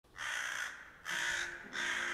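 A corvid cawing three times, each caw about half a second long.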